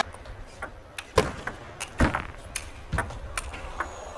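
Table tennis ball clicking off bats and the table during a rally: a string of sharp, irregular clicks, the loudest about a second and two seconds in, then quicker ones roughly every half second.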